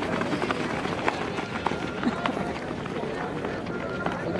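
Footsteps of a group of runners on a dirt track, scattered and overlapping, with people talking in the background.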